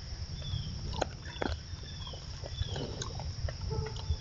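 Black bear eating off the forest floor: irregular crunching and chewing clicks, a couple of them sharp, over a steady low rumble and high hiss. A short high falling note repeats roughly once a second.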